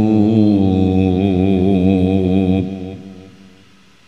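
A man's voice chanting the drawn-out last note of a line of Arabic verse, held long with a wavering pitch. It breaks off about two and a half seconds in and dies away over the next second.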